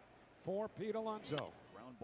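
Faint male speech from a television baseball broadcast's commentary, well below the loud talk around it.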